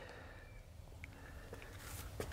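Near silence: a faint low background rumble, with one small tick about a second in.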